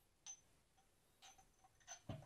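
Faint, light clinks and clicks of a small ceramic jar and its wooden spoon being handled and set down on a table, a few separate taps with a brief high ring.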